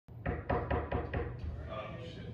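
Knuckles knocking on a door, a quick series of about six knocks.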